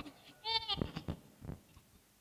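A woman's short, high, quavering cry about half a second in, followed by a few faint knocks.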